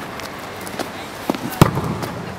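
Steady outdoor background noise, with a few light knocks and then one sharp thump about a second and a half in.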